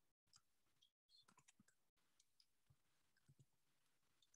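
Near silence: faint room tone with scattered small clicks, and a few brief moments where the audio cuts out completely.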